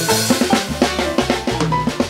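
Live band of button accordion, stage piano, bass guitar and drum kit playing a fast instrumental piece, with busy drumming to the fore.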